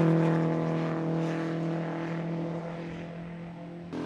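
Riley TT Sprite pre-war racing car's four-cylinder engine running at high speed on a steady note, fading gradually as the car draws away.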